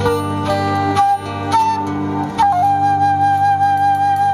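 Live flute solo over guitar chords: several short melodic notes, then one long held note from about halfway in.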